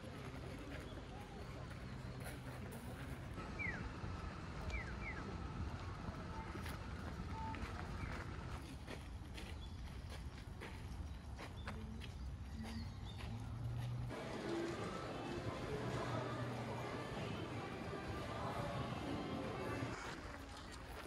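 Outdoor ambience: footsteps on gravel, a few short bird chirps, and from about 14 s in the chatter of people nearby.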